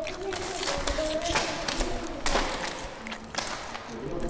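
A string of irregular taps and scuffs, with faint voices under them.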